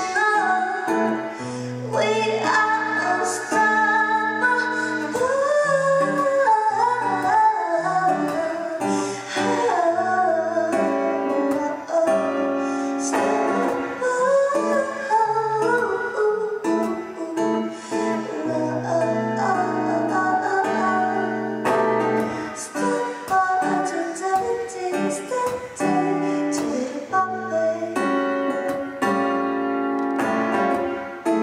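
A woman singing a slow song live, accompanying herself on a Crafter acoustic guitar.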